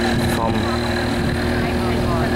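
Motorboat engine running steadily under way, a constant droning hum.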